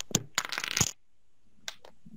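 Computer mouse clicks, a few sharp single clicks, with a short burst of scraping noise lasting about half a second shortly after the first click.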